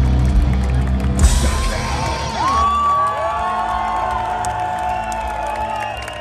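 A metal band's last chord ringing out with heavy bass, cut off by a final crash about a second in, followed by the crowd whooping and cheering with long held shouts.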